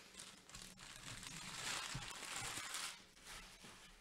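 Crinkling and rustling of packaging being handled while trading cards are sorted. It swells from about half a second in and dies away about three seconds in.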